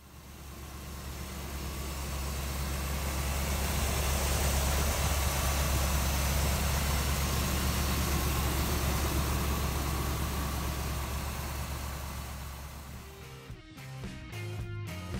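A 1981 Jeep CJ-5's 350 small-block V8 idling steadily, its sound mostly low-pitched with a hiss above. It fades in over the first couple of seconds and fades out near the end.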